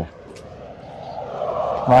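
A distant engine drone growing steadily louder.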